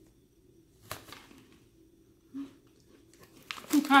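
One sharp crunch about a second in as a chip-coated barbecue almond snack is bitten into, followed by faint chewing. A voice comes in near the end.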